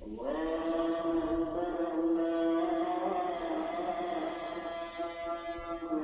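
A solo voice in devotional Islamic chant holds one long sung note for about five seconds. The note scoops up into pitch at the start and swells slightly in the middle.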